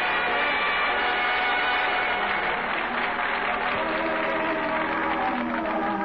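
Studio audience applause and laughter, with orchestral music coming up under it and taking over as the applause thins in the second half.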